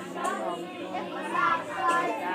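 Many children's voices talking at once, an overlapping chatter of a large group.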